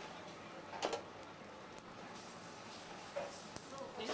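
Faint gritty scraping of salt being worked around a hot grill pan to scour the burnt-on dirt off it, with a light click about a second in.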